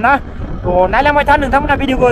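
A voice singing a repetitive syllable line with long held notes, pausing briefly just after the start, over the steady low rumble of a motorbike underway and wind on the microphone.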